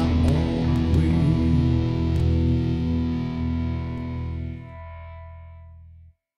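Outlaw country song ending on guitars and bass: after a few sharp hits, the last chord rings out and slowly fades, then cuts off suddenly at the end.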